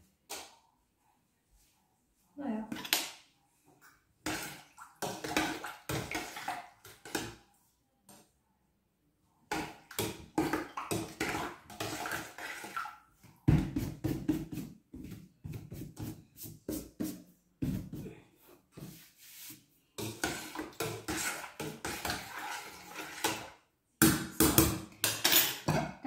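Kitchen clatter while cooking: a metal spoon knocking and scraping in a stainless steel soup pot, and jars and utensils being handled, in irregular runs of clicks with short pauses.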